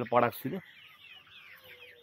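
A man's voice briefly in the first half-second, then faint high bird calls and a faint steady tone in the background.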